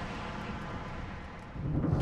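A low rumble dying away, then swelling again in the last half second.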